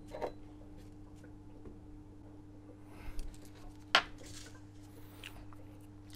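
A few small clicks and taps from metal tweezers and craft materials being handled on a work board, the sharpest about four seconds in, over a faint steady hum.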